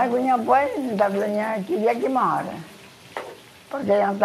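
A voice singing in long, held, slightly wavering notes through the first two and a half seconds, then starting again near the end.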